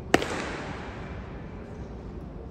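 A single sharp bang just after the start, dying away in a long echo of about a second through a large hall.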